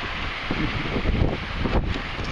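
Wind blowing across the microphone: a steady rush with uneven low gusts.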